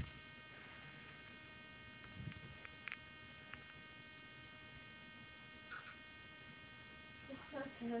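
Faint steady electrical hum with a stack of thin whining tones, broken by a few soft clicks.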